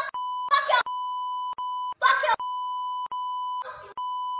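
Censor bleep: a steady beep tone blanking out a young child's swearing. It sounds in several long stretches, broken by short bursts of the child's voice.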